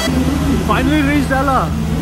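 Steady low hum of a diesel train idling at a station platform. A voice speaks briefly about a second in.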